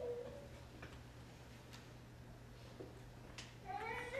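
A quiet pause in a lecture hall: faint room tone with a steady low hum and a few faint clicks. Shortly before the end comes a brief high-pitched wavering sound, a squeal or cry of unknown source.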